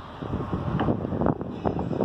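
Wind buffeting the microphone: a rough, uneven rumble that rises and falls.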